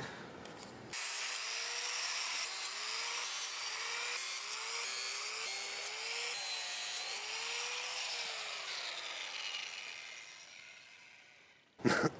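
A handheld power tool twisting tie wires on a hardware-cloth armature: its motor whines up in about eight short pulses, each rising in pitch, over a scratchy metallic hiss. The sound fades out near the end.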